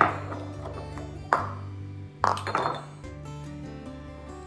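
Three short ringing clinks of amber glass bottles and a plastic funnel being handled on a stone counter: one at the start, one about a second and a third in, and one just after two seconds. Soft background music with a steady low bass plays under them.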